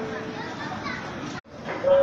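Airport PA two-note chime, a high note then a lower one, dying away over crowd chatter and children's voices in the boarding hall. The sound drops out completely for an instant about one and a half seconds in, and the high first note of the chime sounds again just before the end.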